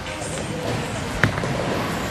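A bowling ball thuds onto the wooden lane about a second in as it is released, then starts rolling, over the steady background noise of a bowling alley.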